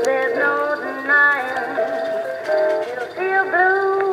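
Background music: a song with a high sung melody, the notes held and sliding.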